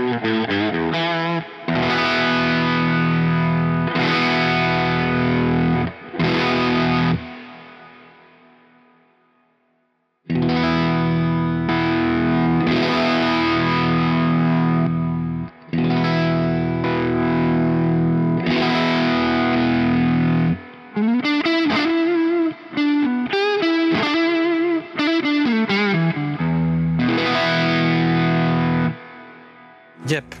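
Fender Stratocaster electric guitar played through a distorted amp tone with added delay and reverb, mostly held, ringing chords. The playing stops abruptly about a quarter of the way in and rings away to silence, then resumes. Two-thirds of the way through comes a faster phrase with string bends before the last chord fades near the end.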